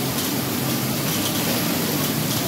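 Steady hiss of splash-pad water jets spraying, over a low steady hum.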